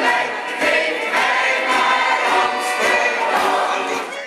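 A recorded pop song with singing, played back through a PA system.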